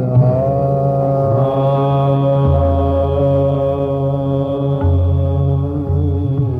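Hindustani classical vocal in raag Kaushik Dhwani: a male voice slides briefly, then holds one long steady note over a tanpura drone.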